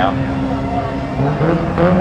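Junior sedan race car's engine running at low revs on a slow lap, with a short rise in revs a little over halfway through.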